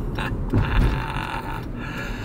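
A man's throaty laughter and chuckling over the steady road rumble of a car cabin.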